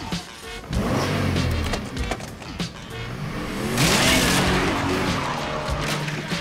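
A hotwired car engine catches and revs hard, then about four seconds in a loud crash as the sedan smashes through a wooden garage door, the engine revving on with tyre noise. Film score music plays underneath.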